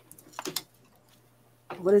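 A few light clicks and knocks about half a second in, from parts of a treadle sewing machine stand being handled as it is taken apart, over a faint steady electrical hum.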